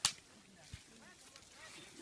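A single sharp snap right at the start, followed by quiet with a faint dull thump a little before one second in.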